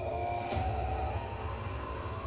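Horror-film trailer soundtrack: eerie music over a steady deep rumble, with a new held tone coming in about half a second in.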